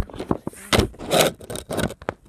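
A quick run of knocks, clicks and rubbing scrapes, the loudest two about a second apart in the middle, from the phone being handled and moved against its microphone.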